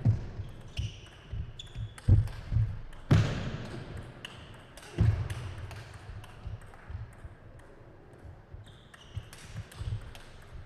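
Table tennis rally: the plastic ball clicking back and forth off the players' rubber bats and the table, the loudest strokes carrying a low thump. The hits echo in a large hall.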